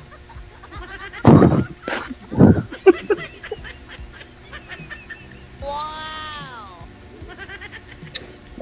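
Two people laughing over a video call, loudest in two short bursts about one and two and a half seconds in. About five and a half seconds in comes a single smooth tone, about a second long, that rises and then falls, like a comedy sound effect.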